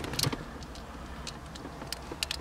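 A few light metallic clicks and taps as small nuts and bolts are fitted to the handle mount of a short-throw shifter, the loudest just after the start, over a steady low background.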